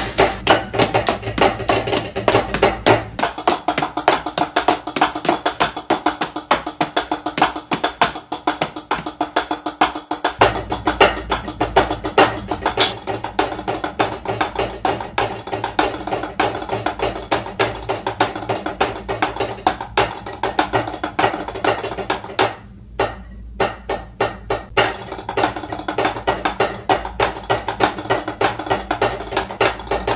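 Percussion ensemble music: rapid, dense drumstick strokes on snare and practice pads over a steady sustained pitched backing. The low bass drops out between about three and ten seconds in, and the music briefly thins about two-thirds of the way through.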